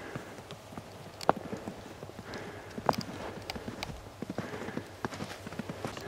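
Footsteps in snow, an uneven run of crunches and taps, with two sharper knocks about a second in and near three seconds in.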